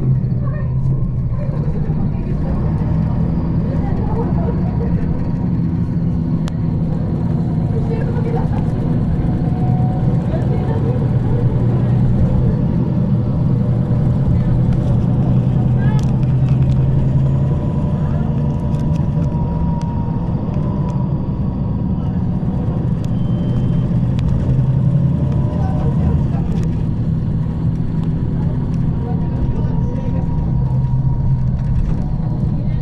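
Cabin sound aboard a 2009 MAN 18.310 HOCL-NL city bus running on compressed natural gas, with a ZF Ecomat automatic gearbox. The engine makes a steady low hum that swells slightly a few times, with a faint whine above it.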